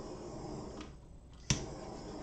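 Small handheld butane torch being clicked on over resin: a hiss of gas and flame that fades out about a second in, then a sharp ignition click about one and a half seconds in, followed by another short hiss.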